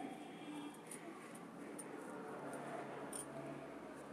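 Faint muffled humming from a person whose mouth is covered by a plastic bag and a cloth wrap, with a few small sharp crinkles.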